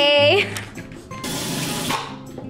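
A woman's drawn-out, held exclamation at the start, then a bathroom sink tap running as an even hiss for about the last second.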